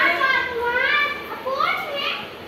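A small child's high-pitched voice in three rising and falling calls.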